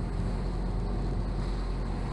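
Motorboat under way on open sea: steady engine and water noise, with wind on the microphone.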